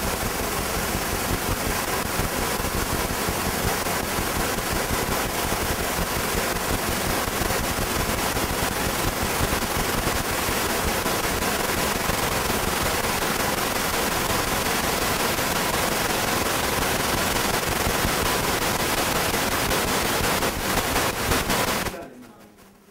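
Loud, steady crackling static noise, an audio recording fault rather than any sound in the room. It starts abruptly and cuts off suddenly at the end.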